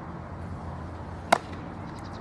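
A softball smacking into a fielder's leather glove: one sharp crack about a second in, over steady outdoor background noise.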